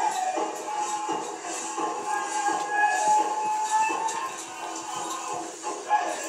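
A powwow song with drum and singing, played for a fancy shawl dance, with a brief knock near the end.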